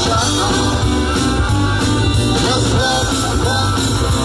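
Live rock-and-roll band playing with a steady drum beat, bass, and electric and acoustic guitars, amplified through stage speakers.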